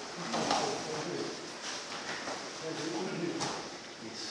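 Indistinct voices in a training room, with scuffling and a few sharp knocks from grappling on foam mats during jiu-jitsu sparring.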